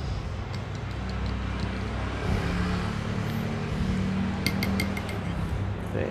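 Metal spoon stirring hot ginger tea in a tall drinking glass to dissolve the sugar, with faint ticks early on and a quick run of about five clinks against the glass about four and a half seconds in. A steady low hum runs underneath.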